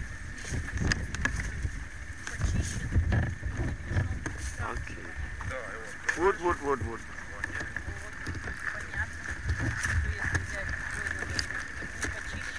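Outdoor ambience with irregular low rumbling and rustling and a steady high hum throughout. A short burst of a person's voice comes about six seconds in.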